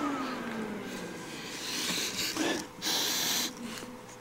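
Two short, breathy sniffs about a second apart, close to the microphone, as someone smells a freshly powered electronics unit for burning components. Before them, a low hum slides down in pitch and fades in the first second.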